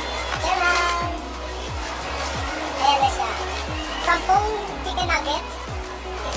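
Background music with a steady beat, with a crowd's voices, children's among them, in the mix.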